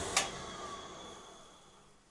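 Oilon diesel oil burner cutting out after a failed start: a click, then the fan motor and fuel pump winding down, fading steadily to near silence. It runs only briefly before the burner shuts itself off, and the owner suspects it has drawn air into the fuel line.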